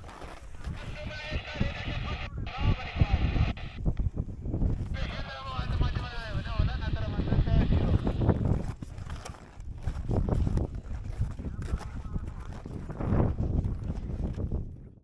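Wind buffeting a handheld camera's microphone outdoors, a heavy, uneven rumble throughout, with irregular footsteps and knocks from the climb down.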